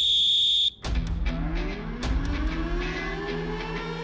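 Edited-in TV sound effects: a short, high, steady tone lasting under a second, then a slowly rising tone over a steady low drone, with scattered sharp hits, building tension.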